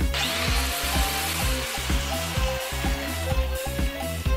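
A 115 mm electric angle grinder running: a whirring noise that starts suddenly and gradually fades over the next few seconds.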